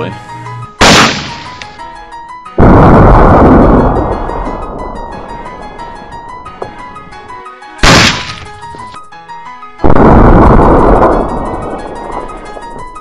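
Background music with a steady beat, broken twice by loud blasts of AK-47 shots hitting soda bottles, played slowed down. Each time a short sharp crack (about a second in, and again near eight seconds) is followed under two seconds later by a longer, deeper rushing blast that fades over a couple of seconds.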